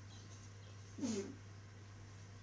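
A single short voiced call about a second in, with a curving pitch, over a steady low electrical hum.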